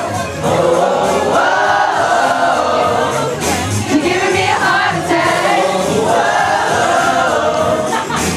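Live pop song sung into handheld microphones over music, with many voices singing together and the crowd singing along.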